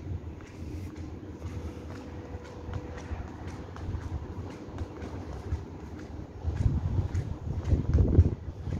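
Wind buffeting the microphone high up on an open balcony, a gusty low rumble that grows stronger near the end, over a faint distant hum of town traffic with a thin steady tone in the first half.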